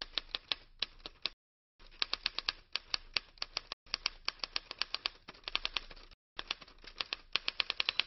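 Typewriter keystroke sound effect, rapid clicks several a second in four runs broken by short pauses, matching text typing out letter by letter on a title card.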